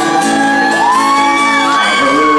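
Live acoustic country music: a steel-string acoustic guitar playing chords under a wordless sung vocal, long held notes that slide gently in pitch.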